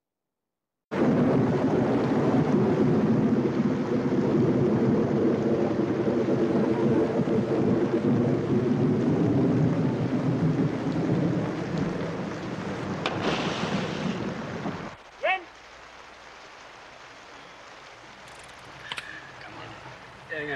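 Film soundtrack of rushing, splashing river water, starting abruptly about a second in and running loud, with a sharper splash near 13 seconds. The noise drops off at about 15 seconds, followed by a brief rising tone and a quieter stretch.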